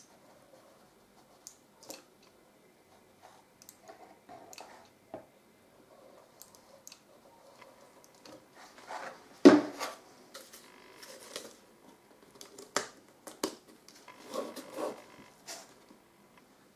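Quiet handling noises of a hot glue gun and cardboard as glue is laid along the edges of a cardboard drawer and a cardboard lid is fitted and pressed on: small clicks and scrapes, with a sharper knock about halfway through and another a few seconds later.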